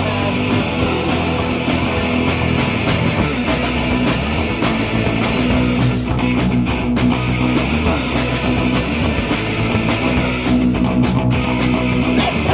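Punk rock band playing live: electric guitars and a drum kit, loud and steady.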